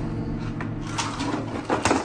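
Clicks and knocks of a wall clock being handled and turned over by hand, with a few sharp clicks about a second in and a quick pair near the end.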